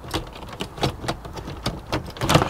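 Irregular plastic clicks and light knocks from an estate car's retractable load cover as its handle is worked to release it.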